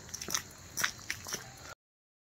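Faint crunching footsteps of someone walking, a handful of irregular steps, after which the sound cuts off to dead silence near the end.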